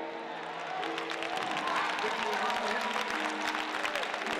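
Audience applauding, the clapping building about a second in, over held musical notes that step between pitches.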